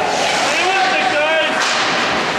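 Spectators shouting at a youth ice hockey game, their high raised voices rising and falling over the rink's general din, with a short sharp slap about one and a half seconds in.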